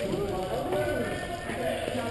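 Voices talking indistinctly in the background, no words made out.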